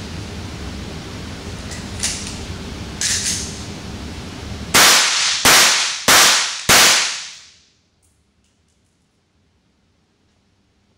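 Walther P99 replica 9mm blank-firing pistol fired four times in quick succession, about 0.6 s apart, each shot sharp and loud with a short ringing tail, the last dying away over about a second. Two lighter clicks come a few seconds before the shots.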